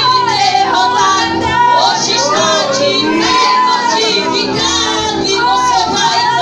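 Worship music: a high voice sings a wavering, drawn-out melody over steady held chords.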